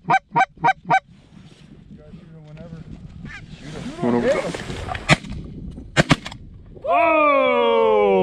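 Quick goose honks, about three a second, in the first second; then two shotgun shots, around five and six seconds in, at geese over the decoys. Near the end a hunter lets out a loud, drawn-out whoop.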